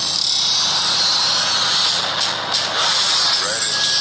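Film trailer soundtrack playing: a loud, steady rushing hiss of sound effects that starts suddenly and holds, with a few sharp ticks about halfway through.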